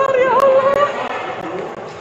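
A person's raised voice holding a long drawn-out call, loud in the first second and fading away toward the end.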